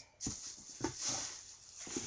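Plastic shopping bag rustling as a plastic storage container is handled, with a couple of light knocks.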